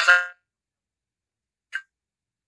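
The tail of a voice coming through a video call, ending on a held, steady note that cuts off about a third of a second in, followed by a single short click near the end.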